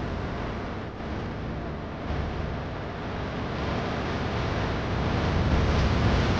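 Steady rushing noise, wind buffeting the microphone, with an unsteady low rumble that grows a little louder near the end.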